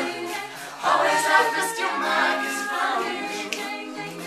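Mixed teenage a cappella group singing, voices holding chords in harmony, swelling louder about a second in.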